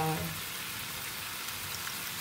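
Potato chips frying in tomato masala sauce in a frying pan: a steady sizzling hiss.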